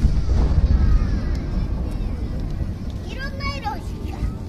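Deep boom of a large aerial firework shell bursting, heaviest in the first second and a half and slowly dying away. Spectators' voices follow near the end.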